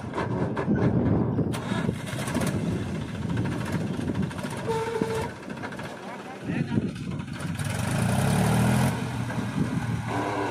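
Mahindra 265 DI tractor's three-cylinder diesel engine working under load as it hauls a fully loaded trolley of soil up a bank. The engine is loudest from about seven and a half seconds to nine seconds in, and a brief steady tone sounds about halfway.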